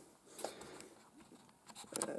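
Faint handling noise with a couple of soft clicks, about half a second in and near the end: small plastic LEGO parts being moved in the hand.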